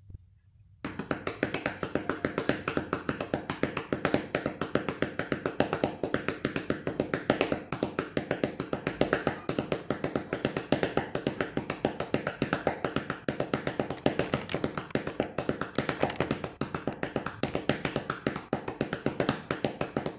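A fast, even run of sharp taps, about five a second, starting abruptly about a second in, with a faint tone beneath.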